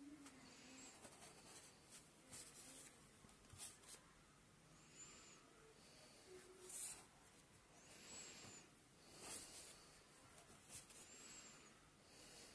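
Near silence: room tone with faint, soft hisses every second or two.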